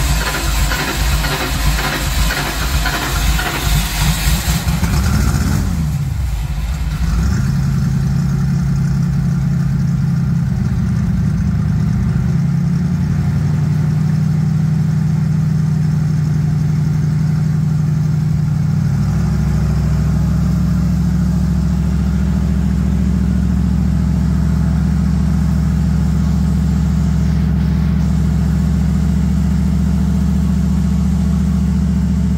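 Music ends in the first few seconds, and then the engine of a Bombardier snow vehicle fitted with Holley Sniper fuel injection runs at a steady idle. Its note shifts twice, about twelve and nineteen seconds in.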